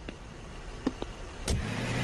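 A few sharp clicks, then a car engine running steadily from about a second and a half in.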